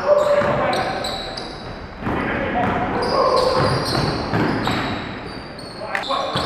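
Live indoor basketball play: a ball bouncing, players calling out, and many short high squeaks of sneakers on the hardwood court, all echoing in a large gym.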